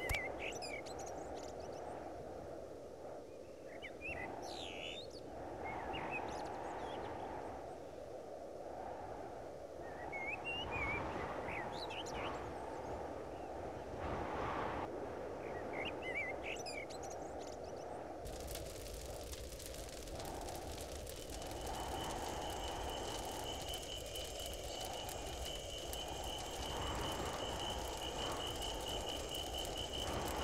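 Outdoor nature ambience: a steady low rush like wind, with scattered bird chirps through the first half. A little past halfway the bed turns to a hiss, and a steady high trill joins it soon after.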